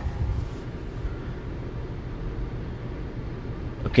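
Steady low rumble inside a car cabin, with faint rustles of comic-book pages being handled in the first half-second.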